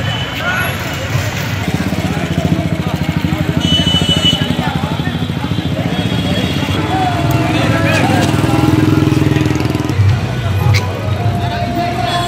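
Motorcycle engines running close by in a street crowd, with a couple of short horn toots and people's voices mixed in.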